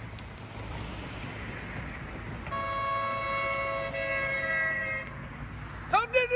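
A car going by on the street, then its horn sounding one steady two-note honk held for about two and a half seconds, a friendly honk at people waving from the roadside.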